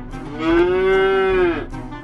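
A cow mooing once: a single long call of just over a second that rises slightly in pitch and falls away at the end.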